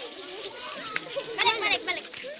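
Several children's voices talking and calling out over one another, with a burst of high-pitched shrieks about one and a half seconds in.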